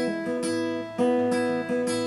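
Acoustic guitar being strummed, the chords ringing on between a few strokes spaced about a second apart.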